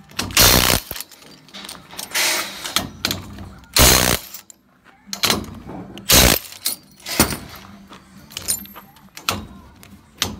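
Makita DTW285Z cordless impact wrench running on a scaffold coupler nut in several short, separate bursts.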